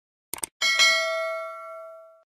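A quick mouse double-click, then a bright bell ding that rings out and fades over about a second and a half: the sound effect of a subscribe button being clicked and its notification bell.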